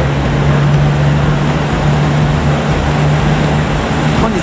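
JR Central KiHa 85 series diesel railcar's Cummins diesel engines running with a steady low hum as the train pulls slowly out of the platform.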